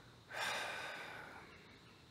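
A man's long breath out through an open mouth close to the microphone, a sigh that starts sharply and fades away over about a second.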